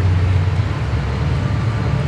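Steady, deep outdoor background rumble with no distinct events.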